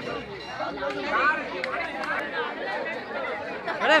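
Crowd of people chattering and calling out, many voices overlapping at once, with a louder burst of shouting near the end.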